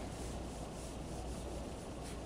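Dry-erase marker rubbing across a whiteboard in short strokes, faint, over a steady low room hum.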